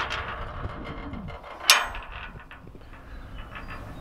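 Steel livestock chute gate being worked by hand: faint metal rattling and one sharp metallic clank a little under two seconds in.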